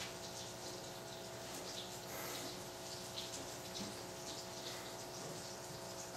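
Faint rustling of nylon paracord being handled and pulled through a snake knot, over a steady low hum.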